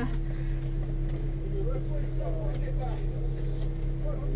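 Rally car engine idling steadily, heard from inside the cockpit, with faint voices over it.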